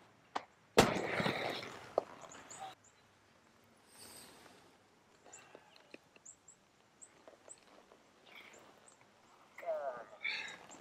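Inline skates landing hard on concrete after an air about a second in: a sharp slap, then the soft 60 mm 85A urethane wheels rolling over the concrete for about two seconds, fading as the skater rolls away.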